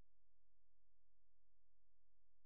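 Near silence: a faint, perfectly steady background with no events in it.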